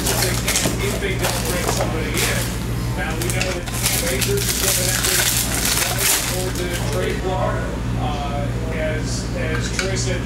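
Trading-card packs and chrome cards being handled: wrappers crinkling and cards rustling and clicking as they are flipped through by hand, most busily over the first several seconds.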